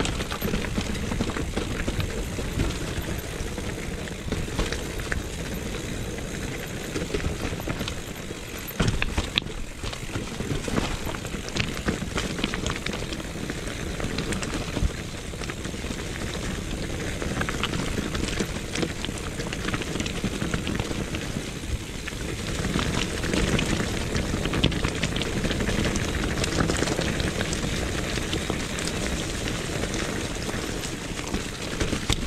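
Mountain bike rolling downhill over a rocky mule track and dry leaves: continuous tyre rumble and crackle, with frequent clicks and rattles from the bike over the stones.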